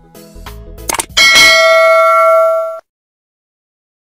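Subscribe-button animation sound effects over a short stretch of background music: a click about a second in, then a bright bell ding that rings for about a second and a half and cuts off suddenly.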